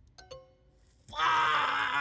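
A man's loud, drawn-out wail of frustration, lasting about a second and starting about a second in, on getting a language-quiz answer wrong. Just before it there is a brief electronic tone.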